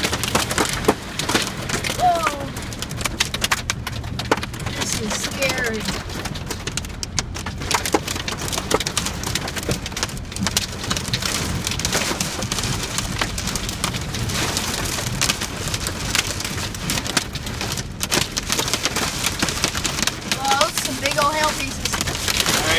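Heavy rain mixed with hail pelting the roof and windshield of a truck, heard from inside the cab as a continuous dense rattle of sharp hits.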